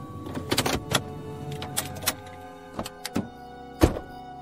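Radio-drama car sound effects under a held music underscore: a low engine rumble that dies away about halfway, a few clicks and knocks, then a loud thump near the end, a car door shutting.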